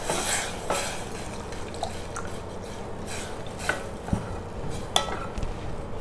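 Wooden spatula stirring grated potato and milk in a stainless steel pot, with scattered light knocks and scrapes of the wood against the pot.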